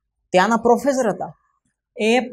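A man speaking a short phrase about a third of a second in, with dead silence before and after it.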